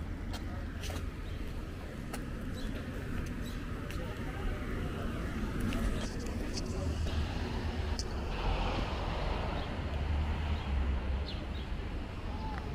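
Outdoor ambience with an uneven low rumble, scattered light clicks and faint, indistinct distant voices.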